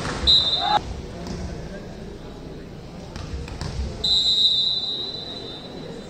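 A volleyball referee's whistle blown twice: a short blast about half a second in, and a longer blast lasting nearly two seconds from about four seconds in. A few ball thuds on the court and players' voices sound in an echoing sports hall.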